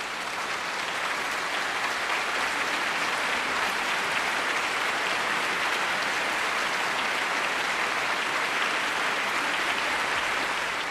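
Concert audience applauding, building up over the first second and then steady.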